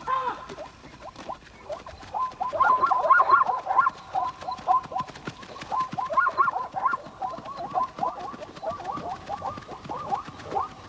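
Night-time animal calls: a chorus of short squeaky chirps, several a second, beginning about two seconds in, over scattered faint clicks.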